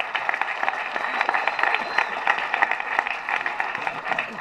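Applause: many people clapping steadily.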